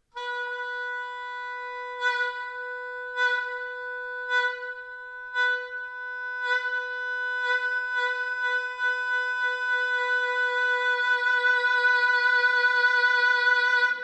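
Oboe holding one note, pulsed with strong breath accents about once a second that come closer together and melt into a steady vibrato in the second half, growing louder towards the end. It is an exercise for turning accents into vibrato, which the player judges still a physical movement here, not yet natural.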